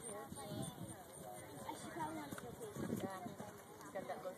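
Hoofbeats of a horse cantering on sand arena footing, under the chatter of voices nearby.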